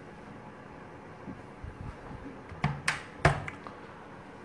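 Quiet room background broken by three short, sharp clicks about two and a half to three and a half seconds in.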